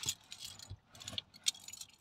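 Metal jangling and clinking: a handful of short, sharp rattles spread over two seconds.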